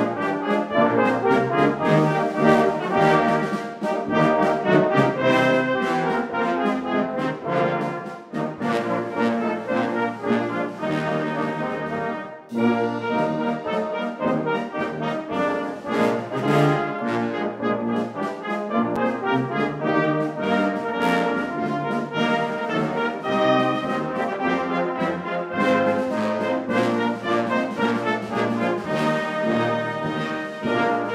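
Salvation Army brass band of cornets, horns, trombones and tubas playing an opening piece together, with short breaks in the phrasing about 8 and 12 seconds in.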